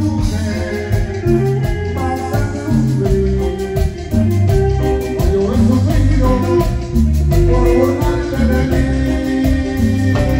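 Live Latin tropical dance band playing, with electric bass, saxophones and drum kit.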